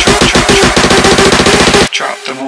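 Moombahton electronic dance track playing back: a rapid roll of repeated drum hits over bass that speeds up about three-quarters of a second in, then cuts off suddenly just before the end.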